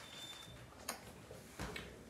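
Quiet indoor room tone with two faint short clicks, about a second in and again just over half a second later.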